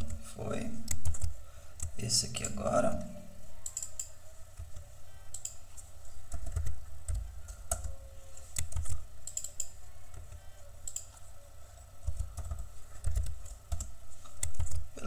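Computer keyboard typing: irregular key presses and clicks while code is edited, with a brief low vocal murmur in the first few seconds.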